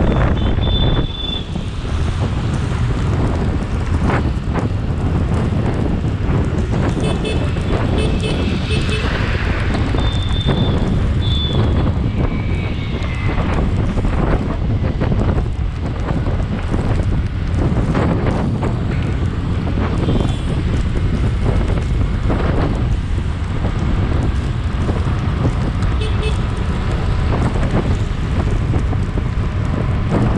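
Wind buffeting a motorcycle-mounted camera's microphone over the steady noise of city traffic, with vehicle horns tooting several times.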